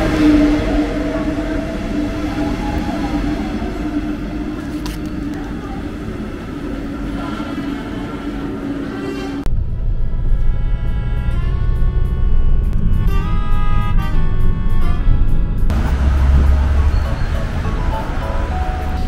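A CFL passenger train running past the platform: a rumble with a steady hum. About halfway through it cuts off suddenly and background music takes over.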